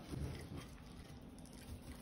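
Faint, soft sound of a knife sawing through very tender pot-roasted beef, with no clinks of metal on the glass dish.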